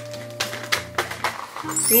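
Background music with steady low notes, over a few short, light clicks from handling paper and objects on a table.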